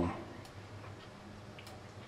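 Two faint, sharp clicks from a computer mouse, about a second apart, over low room hiss.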